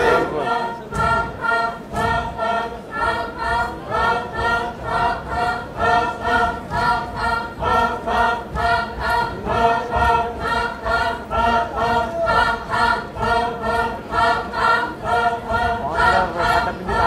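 Group of Naga dancers chanting in unison, a short sung phrase repeated in a steady rhythm of about two beats a second.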